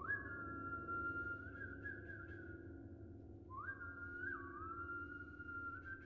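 A pianist whistling a slow melody that slides between held notes, in two phrases that each open with an upward glide, the second beginning about three and a half seconds in. Underneath, the piano's strings ring on, sustained from an earlier attack.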